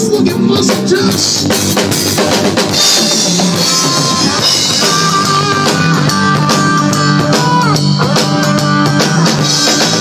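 Rock music driven by a Pearl drum kit: a steady beat of bass drum, snare and cymbals, with held pitched notes sounding under the drums from about three seconds in.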